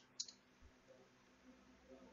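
Near silence with a single short click about a fifth of a second in, from a computer being worked as a code-completion suggestion is accepted.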